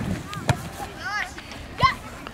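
Children's voices shouting on a football pitch, with a sharp thump of the football being struck about half a second in and a loud shout of "Yes!" near the end.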